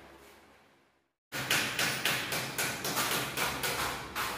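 After a brief cut to silence about a second in, a metal scraper strikes and scrapes against a plastered wall in quick strokes, about four a second, taking off flaking old paint.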